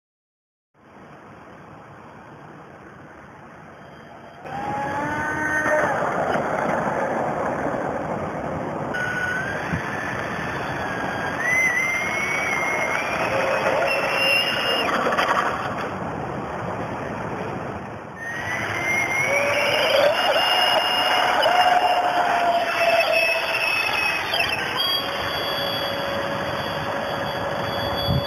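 Electric ducted-fan model jet (EF2K) flying, its whine climbing and falling in pitch with the throttle over a rushing air noise. The sound is quieter for the first few seconds, then louder, and breaks off and restarts abruptly twice, about 9 and 18 seconds in.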